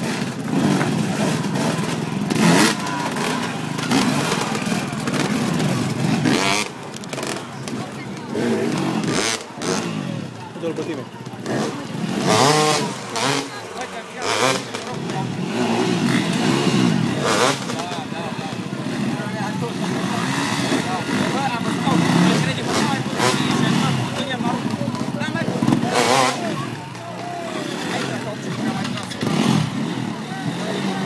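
Off-road motorcycle engines revving up and down in bursts as riders work their bikes over large log obstacles, heard over crowd chatter.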